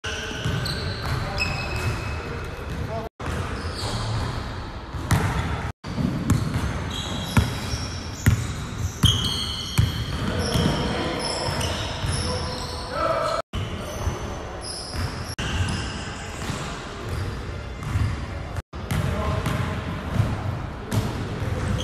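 A basketball dribbled on a hardwood gym floor, bouncing repeatedly, with sneakers squeaking sharply as the players cut and move. The sound drops out abruptly several times.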